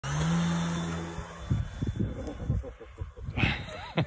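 Nose motor and propeller of a radio-controlled scale model glider running with a steady hum as it is hand-launched. The hum gives way after about a second and a half to irregular low thumps on the microphone, while a thin high whine carries on to the end.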